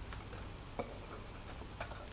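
A few faint, irregular metallic clicks as a small metal rod is used to tighten the propeller down on the motor shaft.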